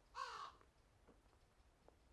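A single short crow caw a little after the start, then near silence with a couple of faint ticks.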